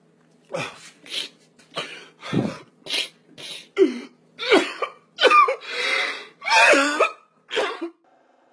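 A man sobbing: a run of about a dozen short, gasping sobs, some breaking into pitched, wavering cries. The sobs are loudest and longest toward the end.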